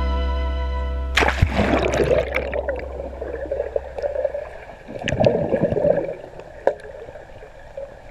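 A camera plunging into a swimming pool with a splash about a second in, then muffled gurgling and bubbling heard from underwater as a swimmer moves, with a few louder bursts of bubbles.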